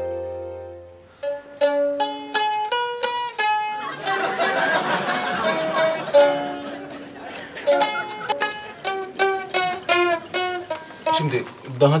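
A mandolin playing a simple melody in single plucked notes, each dying away quickly, with a denser stretch of rapid notes in the middle. It follows a sustained keyboard chord that fades out in the first second.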